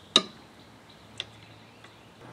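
A sharp metallic click, then two fainter clicks about a second apart: a steel belt-tensioning tool being fitted onto a 14 mm socket on an alternator bolt, metal knocking on metal.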